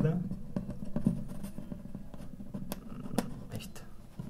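A nylon guitar string being pushed and pulled through the hole of a classical guitar's 12-hole bridge by hand: scattered light clicks and scratches of fingers, string and bridge.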